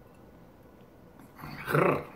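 A man's short, loud vocal reaction about a second and a half in, just after swallowing a gulp of straight bourbon.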